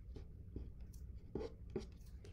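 Faint light ticks and scratches of a paintbrush working acrylic paint onto a wooden cutout, about five in two seconds, over a low steady room hum.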